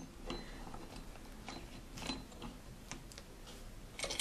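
Faint, irregular metallic clicks and ticks from a homemade steel-channel vise as its bolt is turned by hand to clamp a small part.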